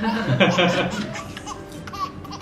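Two people laughing together, loudest in the first second and then fading.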